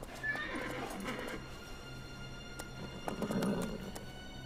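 A horse whinnies and its hooves clatter over a film score of steady held notes, with the loudest bursts about a second in and again just before the end.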